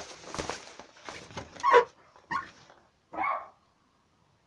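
Rustling and crackling, then a dog barking three short times, about half a second to a second apart.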